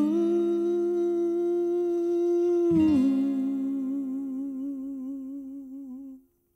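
A man's voice hums a long held final note over a sustained acoustic guitar chord. About three seconds in it slides down to a lower note with a gentle vibrato and fades away as the song ends.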